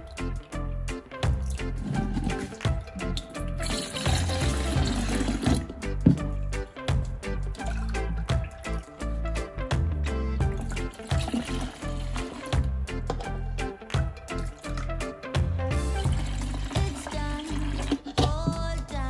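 Background music with a steady beat, over the splashing of sorrel drink poured from a plastic cup into a plastic jug. The pouring is plainest about four to six seconds in and again around eleven seconds.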